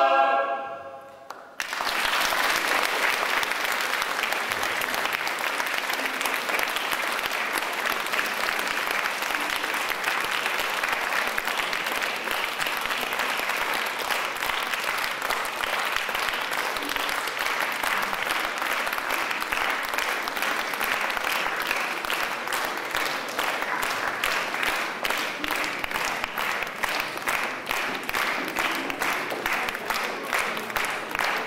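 A choir's last chord dies away in a reverberant church, then audience applause starts about a second and a half in and carries on steadily. Near the end, single claps stand out more.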